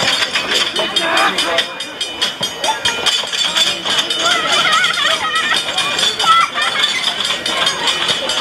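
Onlookers' voices, chattering and calling out, including a high-pitched voice about halfway through, over a grade-crossing bell ringing rapidly as passenger cars roll past.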